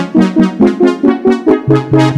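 Casio CZ-101 phase-distortion digital synthesizer played as a chordal keyboard part, with quick repeated staccato chords at about five a second. A lower bass note enters about three-quarters of the way through.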